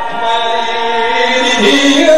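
A man's voice chanting a melodic recitation in long held notes, the pitch dipping and rising again near the end.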